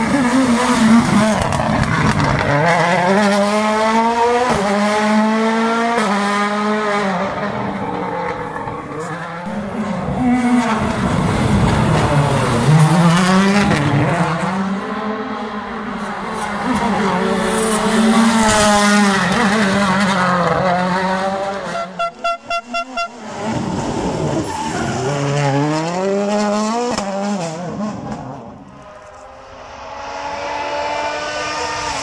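Toyota Yaris WRC rally car's turbocharged 1.6-litre four-cylinder engine revving hard on a special stage, its pitch climbing and dropping again and again with gear changes and lifts for corners. A brief stuttering break comes about two-thirds through.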